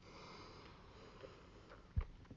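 A faint sniff through the nose while chewing a mouthful of red-fleshed dragon fruit with the mouth closed. A short, sharp low thump comes right at the end.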